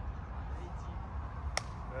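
A single sharp smack of hands about one and a half seconds in, one rep of an explosive push-up against a tree trunk, over a steady low background rumble.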